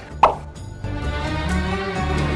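A single short plop sound effect, then intro music starts just under a second in, with held notes over a low bass.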